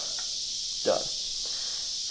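A steady high-pitched hiss runs under a single spoken word about a second in.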